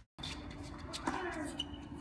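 Faint, indistinct voices over a low background hum of room noise, with a few light clicks.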